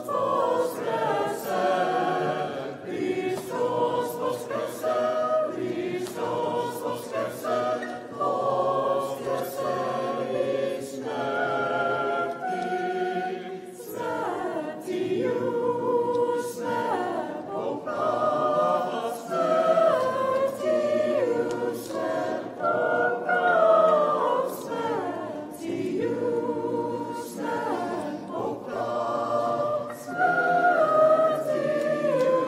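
Many voices singing an unaccompanied Byzantine chant hymn together, phrase after phrase with short breaths between lines.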